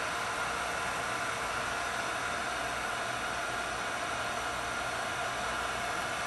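Electric heat gun running steadily with an even rush of air, warming the plastic end fitting of a PCV hose to soften it so the fitting can be twisted off.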